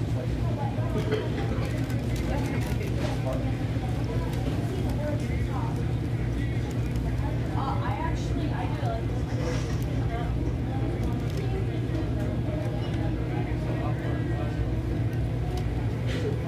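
Restaurant dining-room noise: a steady low hum under indistinct background voices, with occasional small clicks and clinks.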